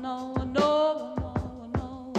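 A woman's voice singing a pop ballad with a band, holding a sung note about half a second in over a steady drum beat.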